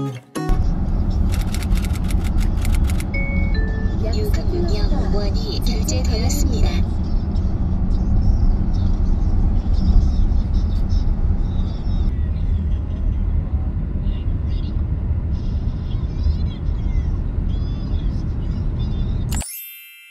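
Steady low road and engine rumble inside a car cruising on a highway, with a cluster of clicks and two short falling beeps in the first few seconds.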